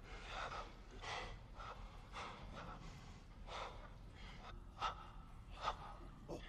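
Heavy, ragged breathing: a string of short breaths about one a second, with two sharper gasps near the end.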